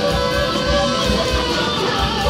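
Live rock band playing an instrumental passage: strummed electric guitars over bass guitar and drums, with a steady low beat.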